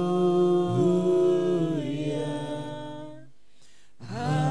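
Voices singing a slow worship melody without instruments, holding long notes. The singing fades out about three seconds in.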